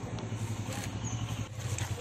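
A motor vehicle engine running: a low, rapidly pulsing hum.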